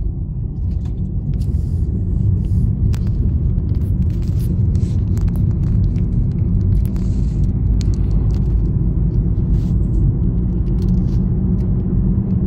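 Car road noise heard from inside the cabin while driving: a steady low rumble of tyres and engine, growing a little louder over the first two seconds, with scattered light knocks and rattles.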